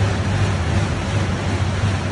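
Rogue Echo Bike's air-resistance fan spun hard by pedalling and arm work during a sprint interval, giving a loud, steady rush of air with a deep low hum.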